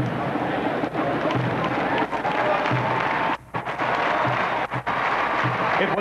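Large stadium crowd noise, a dense steady hubbub with faint music, under a low thump about every second and a half. The sound briefly cuts out about halfway through.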